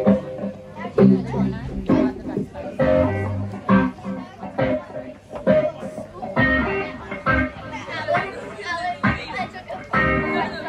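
A live reggae band plays, with electric guitar strumming over drums and bass, and strong beats about once a second.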